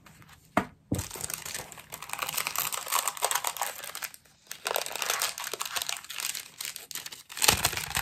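Die-cut paper pieces and their packaging rustling and crinkling as they are handled and gathered up, after a single sharp tap near the start. The crinkling comes in two long spells with a brief pause about four seconds in, and is loudest near the end.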